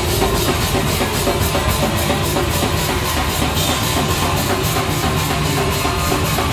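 Hardcore band playing live: electric guitar, bass guitar and a drum kit at full volume, with fast, evenly spaced cymbal strokes keeping a steady beat.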